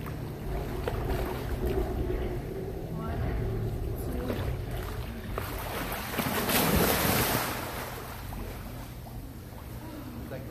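Swimming-pool water churning and lapping around swimmers over a steady low hum. About six and a half seconds in, a loud splash lasting about a second comes as a swimmer flips over backward into the water.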